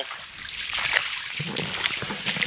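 Boots splashing and squelching on wet, waterlogged ground, a few irregular steps.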